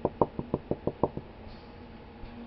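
Glass beaker of dried gold powder handled in the hand: a quick run of about eight light knocks in just over a second, then they stop.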